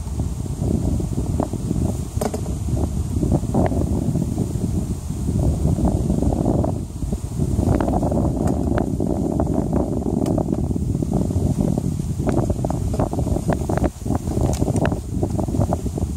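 Wind buffeting the microphone in a steady low rumble, with scattered sharp clicks and knocks from a metal hive tool prying at the wooden frames of a beehive super.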